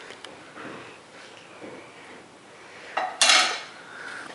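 A spoon clinking and scraping against a bowl and a rubber Kong toy as pumpkin dog food is spooned into it, with a louder scraping clatter about three seconds in.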